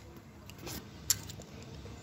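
A few faint clicks and light rustles of small plastic toy pieces being handled, over quiet room noise.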